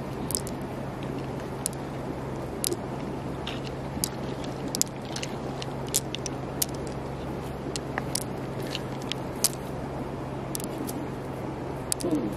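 Fingers working through the soft, wet flesh of an opened freshwater pearl mussel, with small squishes and scattered sharp clicks at irregular intervals as pearls are picked out.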